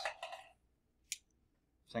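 A single short, sharp click of a computer mouse button about a second in.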